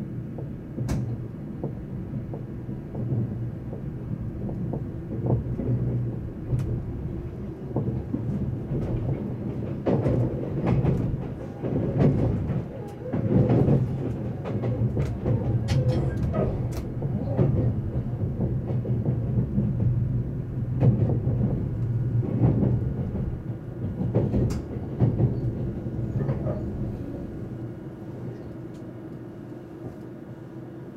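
Interior of a JR East E353 series electric train running at speed: a steady rumble and hum of the wheels and running gear, with irregular clicks and knocks as the wheels cross rail joints and points. The running sound eases off and gets quieter near the end.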